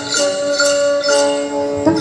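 Hmong khèn (free-reed mouth organ) dance music playing steady held notes, with a jingling like small bells or a tambourine keeping a beat about twice a second.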